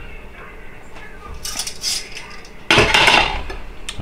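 Metal kitchen tongs clinking against the air fryer basket and a ceramic plate while a chicken drumstick is moved, then a louder clatter about three seconds in as the tongs are set down on a plate.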